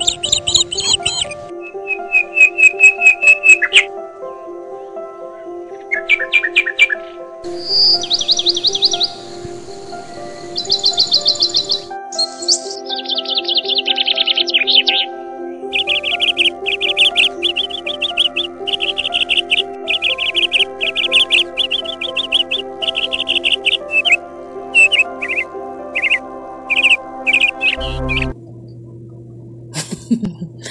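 Background music with soft sustained chords, overlaid with birdsong: bursts of rapid high chirps and trills, in a long run of repeated phrases in the second half. The music and birds stop shortly before the end.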